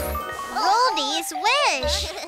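A short cartoon title-card jingle: sparkly chime sounds, then wobbly pitched tones that swoop up and down, over music.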